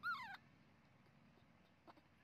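A single short, high-pitched squeal from a baby monkey right at the start, its pitch rising briefly and then sliding down.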